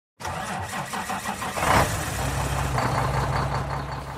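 A vehicle engine cranking with an even, repeating churn, catching with a surge about a second and a half in, then settling into a steady idle.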